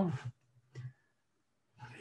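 A man's voice trailing off at the end of a word, a brief faint vocal sound under a second in, then a pause of near silence until he starts speaking again near the end.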